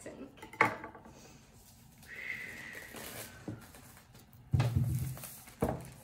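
Handling noise from unwrapping a new laptop box: a sharp click of a knife against the table top about half a second in, then crinkling of the plastic shrink-wrap being pulled off near the end, with a brief vocal sound mixed in.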